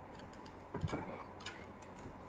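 A few light clicks and knocks in quick succession a little under a second in, then one more, over faint room noise.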